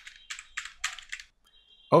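Computer keyboard typing: about seven quick keystrokes in a little over a second, then the typing stops.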